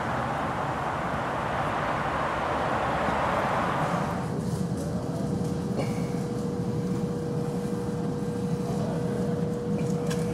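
Steady outdoor noise for about four seconds, which then falls away into quieter indoor room tone with a steady hum.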